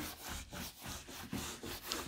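A whiteboard eraser being rubbed back and forth across the board, wiping off marker writing in repeated quick strokes.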